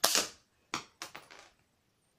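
Homemade LEGO brick-shooting gun firing: one sharp, loud snap right at the start, then a second hard crack and a quick run of smaller plastic clatters about a second later.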